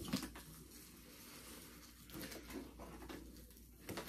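Faint rustling, scraping and light clicks of a cardboard shipping box being pried open by hand, with a sharper click at the start.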